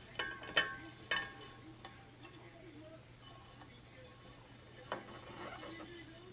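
Handling noise from fitting a rubber drive belt onto a turntable's metal platter: a few sharp clicks and taps in the first second and one more near the end, with faint rubbing and scraping between.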